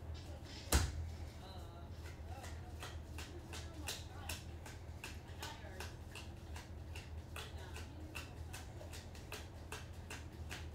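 Stiff chrome trading cards being flicked through one by one in a gloved hand, a light click about twice a second as each card slides off the stack, with one louder knock about a second in. A low steady hum runs underneath.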